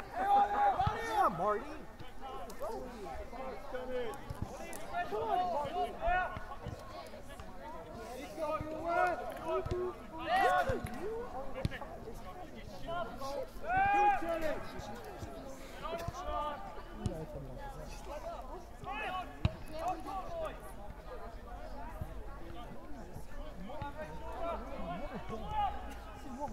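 Voices shouting across a soccer field during play, with calls loudest about a second in and again about halfway through. A few sharp thuds of the ball being kicked sound between the calls.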